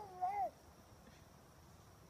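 A bulldog vocalizing with a short, wavering, pitched call in two parts, ending about half a second in.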